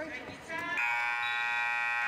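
Gymnasium scorer's-table horn: a buzzing tone that swells up over the first moment, then holds steady for about a second and a half. It is the horn that calls a substitution between free throws.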